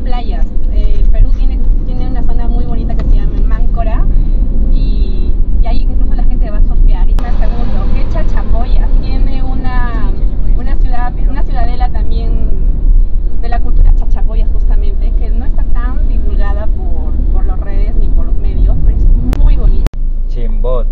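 Conversation in Spanish inside a moving car's cabin, over the steady low rumble of the engine and road.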